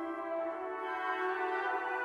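Wind ensemble playing sustained chords with the brass to the fore, the harmony shifting as new notes enter about half a second in.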